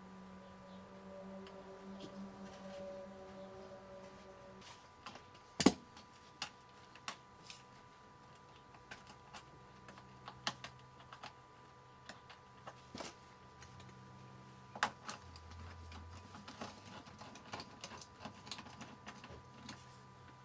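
Scattered small clicks and taps of hands fitting a battery-management cell board and its wire onto a lithium cell's terminal, with one sharp, much louder click about six seconds in. A faint steady hum runs underneath.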